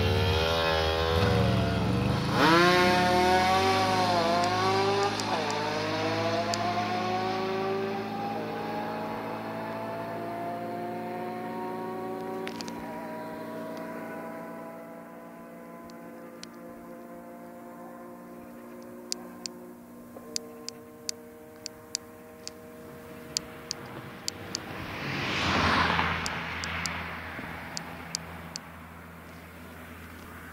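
Aprilia RS125 two-stroke motorcycle and Can-Am Outlander 800 ATV launching at full throttle, the engine note climbing and dipping with each quick upshift in the first few seconds. The engines then hold a high steady note that fades gradually as they pull away down the road, with a brief rushing swell near the end.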